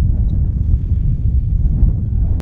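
Wind buffeting the microphone: a steady, irregular low rumble.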